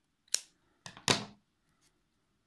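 Scissors snipping through cotton yarn: a sharp snip about a third of a second in, then two more sudden blade clicks around a second in.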